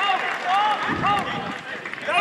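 Men's voices shouting and calling out at a football match, several overlapping at once, with a brief low rumble about a second in.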